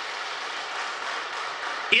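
Audience applause: a steady, even clapping that runs until speech resumes near the end.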